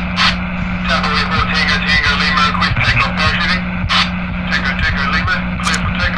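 Indistinct voices over a steady engine-like drone with a constant low hum, cutting in abruptly at the start.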